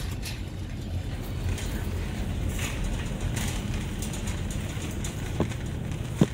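Wire shopping cart rolling over a hard store floor: a steady low rumble from the wheels with the basket rattling, and a sharp click near the end.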